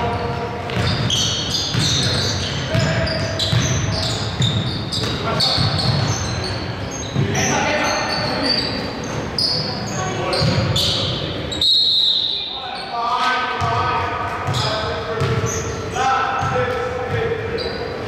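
Basketball game in a large gym: a basketball bouncing on the hardwood floor, sneakers squeaking, and players' voices calling out, all echoing in the hall.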